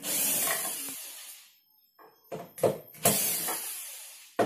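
Cordless drill-driver backing screws out of an LED TV's plastic back cover: a burst of the tool at the start that fades over about a second and a half, a quick run of clicks, then a second burst about three seconds in.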